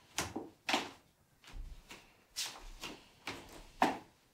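Slow footsteps on a hardwood floor, about two a second, each a short soft knock; the last step, near the end, is the loudest.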